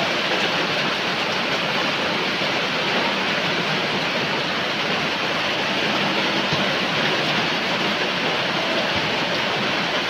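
Heavy rain falling steadily: a dense, even hiss that keeps up at the same loud level throughout.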